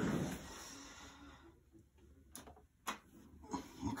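A short rush of noise that fades, then two sharp clicks about half a second apart, as a newly assembled desktop PC is switched on at its power button and starts up.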